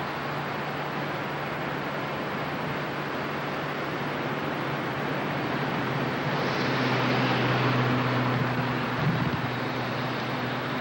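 Steady outdoor rushing background noise with a faint low hum, swelling louder and brighter for about two seconds just past the middle.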